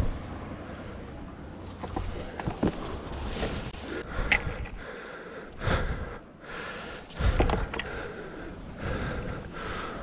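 Outdoor wind noise on a handheld camera's microphone, with a hiker moving over a rocky, overgrown trail. A couple of louder rushes of noise come about halfway through and again a little later.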